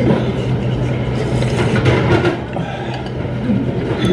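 Tableware clinking and scraping against a ramen bowl over a steady low hum and background music.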